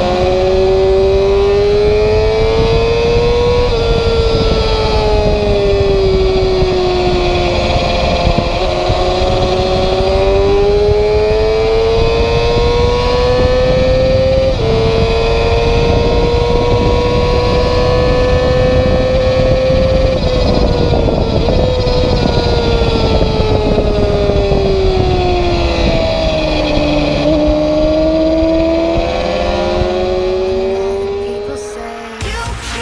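Honda CBR250RR racing motorcycle's high-revving 250 cc inline-four engine, heard onboard at speed with wind rush. The engine note climbs under acceleration and falls away when slowing for corners, several times over.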